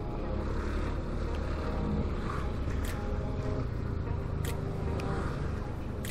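Yamaha Aerox 155 scooter's single-cylinder engine running steadily while riding at low speed, over a steady low rumble of road and wind.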